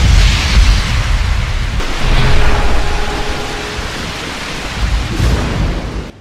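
Rain-and-thunder sound effect: steady rain hiss under deep rolling thunder, the rumble swelling about two seconds in and again near the end.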